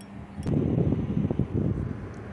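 Wind buffeting the microphone: an uneven low rumble that starts about half a second in.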